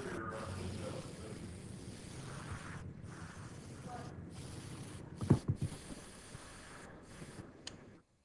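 Airbrush hissing in stretches of a second or more with brief breaks, spraying paint onto a prop pizza slice. A sharp knock comes a little past five seconds in.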